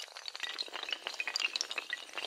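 Fast, continuous clatter of many small hard clicks: a chain of dominoes toppling one after another.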